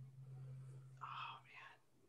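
A person's faint voice: a low steady hum for about a second and a half, with a quiet murmured word near the end.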